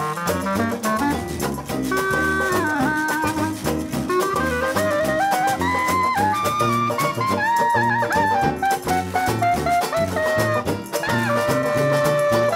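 Live New Orleans jazz band playing an instrumental passage: a clarinet solo line with bending, sliding notes over a sousaphone bass line and a steady drum beat.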